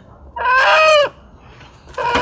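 A chicken squawking once in a single drawn-out call, with the start of a second call near the end.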